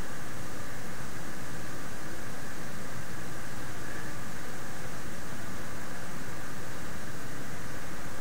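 Steady, even hiss of background noise, unchanging throughout.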